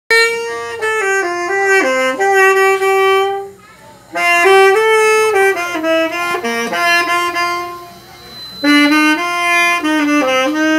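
Saxophone playing a slow melody of held notes, with a short break about three and a half seconds in and another lull near eight seconds.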